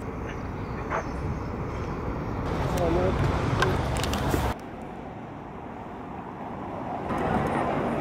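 City street sound outdoors: traffic and passers-by over a low rumble, with indistinct voices. The sound changes suddenly about four and a half seconds in and grows busier near the end.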